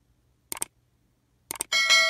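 Sound effects of a subscribe-button and notification-bell animation: two quick double mouse clicks about a second apart, then a bright bell-like chime near the end that is the loudest sound.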